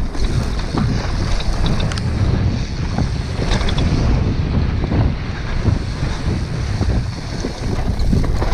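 Wind buffeting an action camera's microphone on a fast downhill mountain-bike run, over tyres rolling across dirt and loose stones and the bike rattling in many short sharp clicks and knocks.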